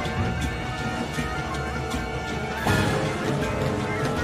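Tense dramatic soundtrack music with a steady, driving pulse of short hits, and a stronger accent a little before three seconds in.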